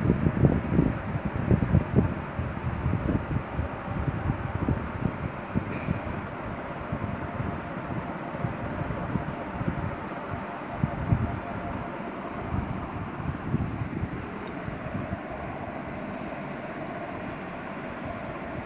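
Bleach cream being stirred and scraped around a plastic bowl: irregular scraping and rubbing strokes, busier at first and sparser toward the end, over a steady background hum.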